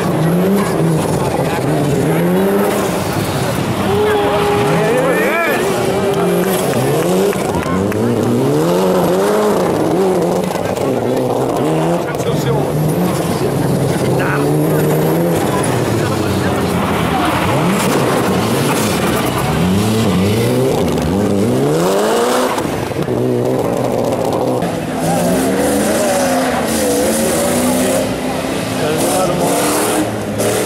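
Mitsubishi Lancer Evolution rally car's turbocharged four-cylinder engine revving hard on a loose dirt stage, its pitch repeatedly climbing and dropping as the driver accelerates, lifts and shifts.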